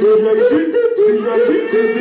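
Hip-hop backing music: a quick melody of short notes that bend up and down, about four a second, over a lower repeating line.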